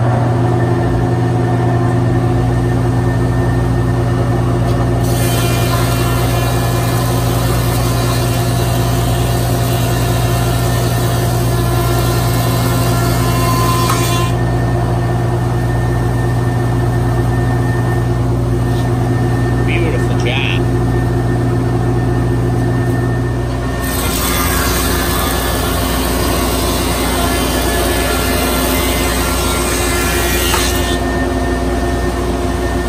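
Grizzly G1033X 20-inch planer running with a steady motor hum. Twice a stack of narrow boards goes through it, and the cutterhead's loud cutting hiss comes in for about nine seconds from about five seconds in and again from about six seconds before the end.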